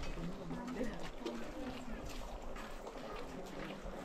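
Low background chatter of several people talking at once, with scattered light clicks.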